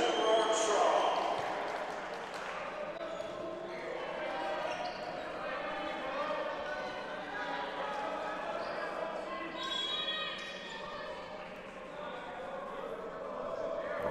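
Gymnasium ambience between volleyball rallies: a brief crowd reaction to the point, then indistinct voices of players and spectators echoing in the hall.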